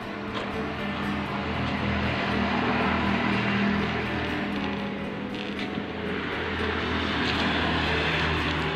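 Background music with sustained low notes, mixed with the sound of a motorbike running along the road.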